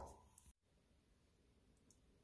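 Near silence: faint room tone, with one small faint click about half a second in.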